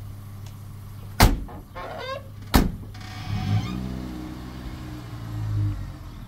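Two car doors of a pickup truck slammed shut about a second apart, then the engine starts and runs, rising in revs briefly near the end.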